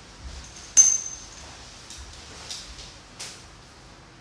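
A sharp clink of something hard being knocked about a second in, with a short high-pitched ring after it, then two fainter knocks, as the PVC-pipe antenna is picked up and handled.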